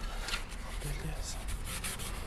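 Sandpaper rubbed by hand over the chrome-plated plastic of a car headlight part, in quick, irregular scratchy strokes, scuffing off the chrome so the paint will grip.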